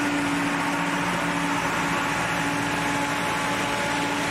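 A farm tractor's engine runs steadily while it powers a towed Jacto sprayer that blows a disinfectant mist. It makes an even, loud hiss over a constant engine hum.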